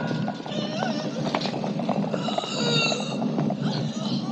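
Many horses' hooves clattering on a stone floor, a dense run of overlapping clops.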